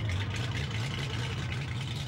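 A race boat's engine idling steadily, a low even hum.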